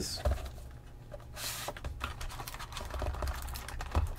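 Cardboard trading-card hobby box being handled and opened: small clicks and taps of fingers on the cardboard, a brief rustle about a second and a half in, and the lid flap being lifted near the end.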